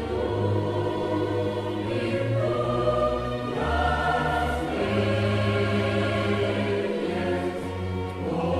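Choir singing a hymn in slow, long held chords that change every second or two.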